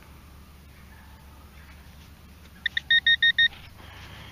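Metal detecting gear giving a quick run of five or six short, high electronic beeps, about six a second, a little before the end.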